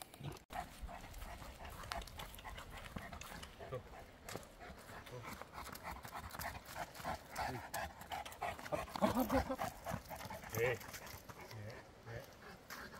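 A large Cane Corso dog panting in a steady rhythm, with a few faint indistinct words near the end.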